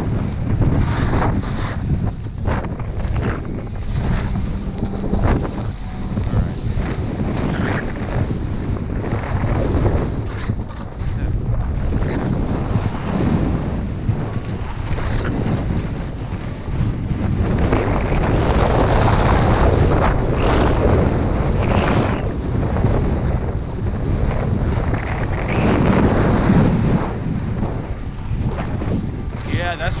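Wind buffeting an action camera's microphone during a downhill ski run, a continuous rushing noise with skis sliding through soft snow; it swells and eases with speed, loudest in stretches after the middle.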